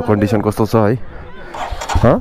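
A voice talking for about the first second, then near the end a motorcycle engine starting with a short rising rev.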